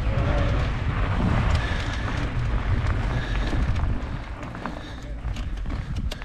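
Mountain bike rolling down a loose gravel track, its tyres crunching and clattering over stones. A heavy low wind rumble on the camera microphone eases about four seconds in.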